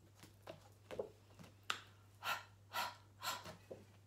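A woman's breathy, voiceless phonics sound "h" repeated in short puffs, about half a second apart.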